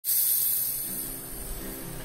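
A loud hiss starts abruptly and fades over the first second. Faint acoustic guitar notes come in under it.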